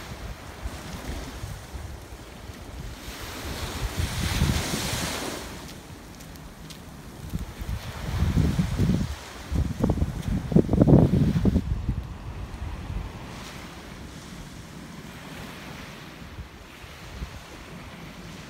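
Small waves washing onto a sandy beach, with a louder wash about four seconds in. Wind buffets the microphone in low gusts, strongest around the middle.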